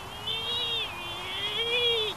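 A boy's voice holding a long, wavering, wordless sung or hummed note that rises and falls slightly in pitch.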